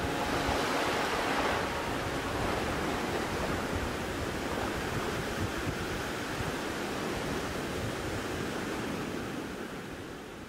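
Steady rush of ocean surf breaking, with no distinct events, beginning to fade out near the end.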